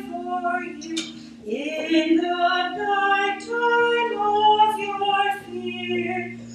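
Slow offertory hymn sung by a woman's voice, with short breaks between phrases, over held low accompaniment notes.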